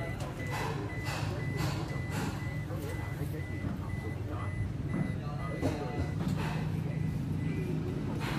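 A car's electronic warning beeper sounding a steady high-pitched beep, about three times a second, over a low steady hum.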